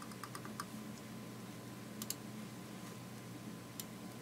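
Computer mouse clicking: a quick run of small clicks right at the start, then single clicks about two seconds in and near the end, over a low steady hum.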